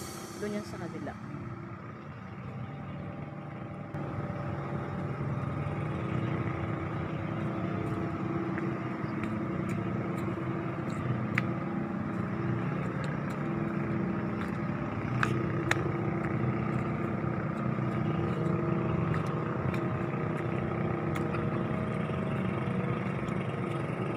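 A steady engine-like hum that holds an even pitch throughout, with a few faint clicks.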